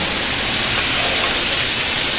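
Hot oil sizzling in a sauté pan around a pan-fried Dover sole, a steady hiss, as the excess fat is drained off.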